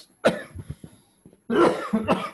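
A man coughing: one sharp cough about a quarter second in, then a longer fit of coughing from about one and a half seconds in.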